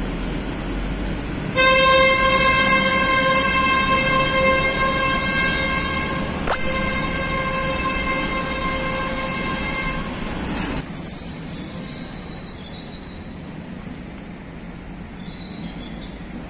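A vehicle horn held on one steady note for about nine seconds, then cut off suddenly, with a sharp click midway. A low rumble of road noise runs underneath.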